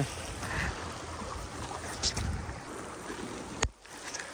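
Steady hiss of rain and running floodwater with a low rumble on the microphone, broken near the end by a click and a moment of near silence where the recording cuts.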